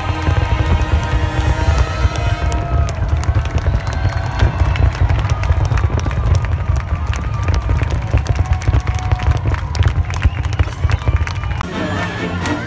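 Fireworks going off in a dense, continuous barrage of deep booms and sharp crackles, with orchestral music playing over them.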